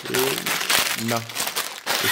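Sealed plastic bags full of LEGO bricks crinkling as they are picked up and handled.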